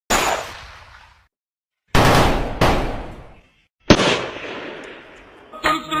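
Four gunshot sound effects, each a sharp bang with a long echoing tail; the second and third come about two-thirds of a second apart. A music track with a beat starts near the end.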